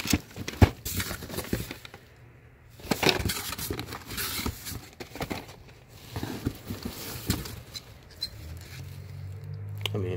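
Small paperboard product boxes being shifted, lifted and knocked against each other inside a larger cardboard box: rustling and scraping with many light taps and knocks. A low steady hum comes in near the end.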